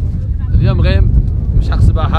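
Wind buffeting the microphone: a loud, steady low rumble with no pitch to it, with a man's voice speaking briefly twice over it.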